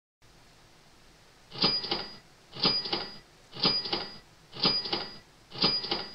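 Countdown timer sound effect: five sharp clicks, one a second, each with a short high ringing tone, ticking off the count down to zero.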